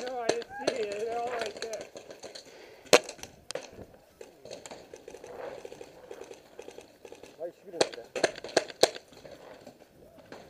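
Paintball markers firing scattered sharp pops across the field, the loudest single shot about three seconds in and a quick run of four or five near the eight-second mark.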